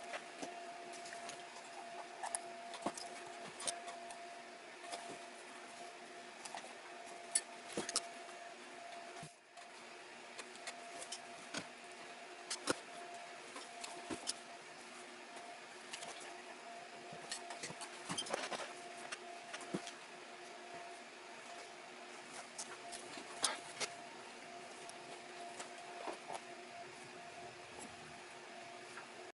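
Faint small clicks and rustles of needle-nose pliers and leather lace being worked by hand through the edge of a leather purse flap. A steady background hum runs underneath.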